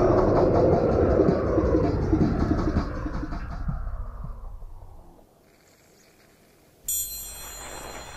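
A deep sci-fi rumbling sound effect sweeping down in pitch and fading away over about five seconds. After a brief near-silence, a sudden bright electronic tone starts near the end.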